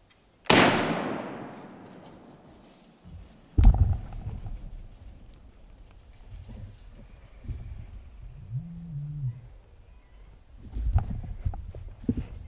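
Muzzleloader shot at a deer: a single loud blast with a long rolling echo that fades over about two seconds. About three seconds later comes a heavy thump, then scattered knocks and rustling.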